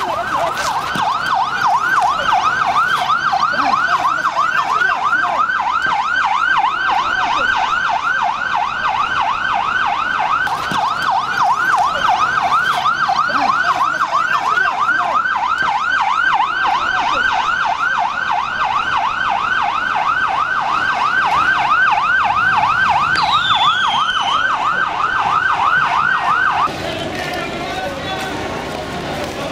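Vehicle siren in a fast yelp, its pitch sweeping up and down about three times a second, loud and steady, cutting off suddenly near the end.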